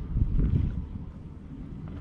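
Wind buffeting the microphone: a gusty low rumble, strongest in the first second and easing after.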